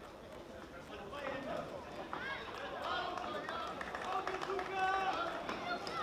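Voices calling out and shouting in a boxing hall crowd during a bout, over the steady background noise of the audience. The shouting grows louder toward the end.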